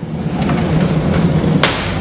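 Mirrored sliding closet door rolling along its track, a steady rumble that ends in a sharp click about one and a half seconds in as it stops.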